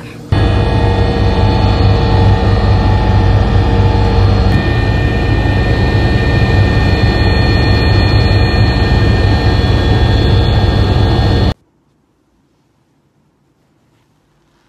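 Jet airliner cabin noise in flight: a loud, steady engine rumble with several steady whining tones over it, which shift slightly partway through and then cut off suddenly near the end.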